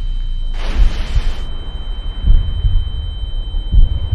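Cinematic trailer sound design: a deep continuous rumble with a few low booms, a brief rush of noise about a second in, and a steady high-pitched ringing tone that holds through the rest.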